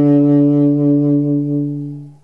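Unaccompanied saxophone holding one low note with a slight waver, fading away near the end.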